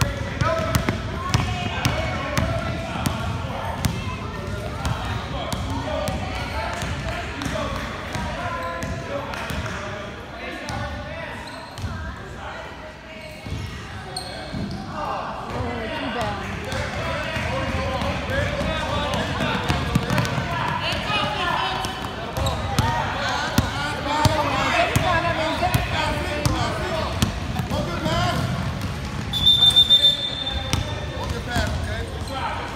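Basketballs bouncing on a hardwood gym floor, many sharp bounces through the whole stretch, over a steady background of many people's voices. Near the end a short, high whistle blast.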